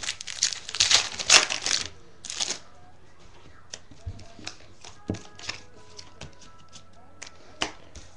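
Baseball trading cards being handled and flipped through, with loud rustling and crinkling for the first couple of seconds, then a run of light scattered clicks as the cards are flicked and set down.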